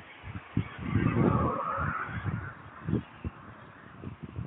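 Wind buffeting the microphone of a phone filming from a moving vehicle, in irregular low thumps, with a louder rushing swell about a second in.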